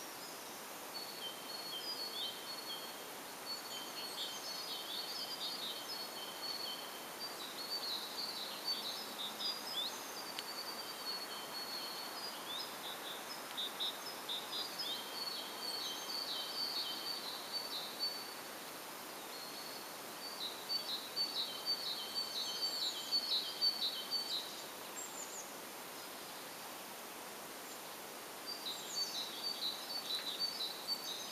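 A small bird singing in the background: bouts of rapid, high-pitched repeated notes. There is a long bout through most of the first half, a shorter one past the middle, and another starting near the end, over a steady faint outdoor hiss.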